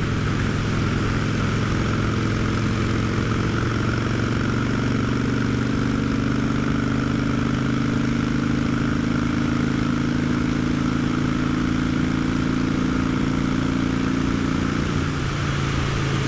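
Motorcycle engine running at a steady, unchanging pitch, with wind noise on the microphone.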